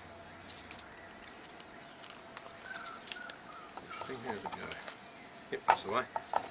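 Faint birds calling, with soft whistled notes in the middle, and a few light knocks near the end as small pieces of wood are set into a timber mould.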